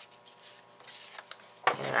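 Faint rustling of cardstock being handled and rubbed on a craft table, with a couple of light clicks.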